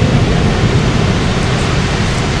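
Pacific Ocean surf breaking on the shore: a steady, loud wash of noise with a strong low rumble.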